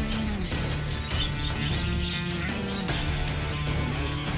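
Background music with budgerigars chirping over it: short, high chirps come in bunches in the second and third seconds.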